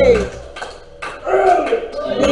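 A preacher's voice rising and falling in pitch over a steady held organ note; the voice breaks off shortly after the start and comes back about a second and a half in, with the organ sustaining through the gap.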